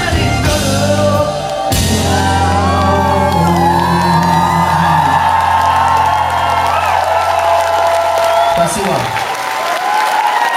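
Live rock band finishing a song: a final crash hit about two seconds in, then a held closing chord ringing out until near the end, while the crowd cheers and whoops.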